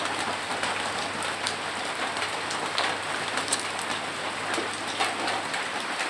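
Steady rain falling on a corrugated roof, an even hiss with many scattered sharp drop ticks.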